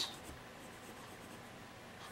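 A pencil drawing a line on a cardboard template, faint.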